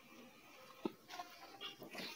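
Faint eating sounds: a person chewing and slurping a forkful of spicy instant noodles and greens, with short wet mouth noises and a sharp click a little under a second in.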